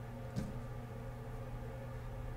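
Quiet room tone with one faint, brief tap about half a second in, from a smartphone being handled and lifted off a tabletop.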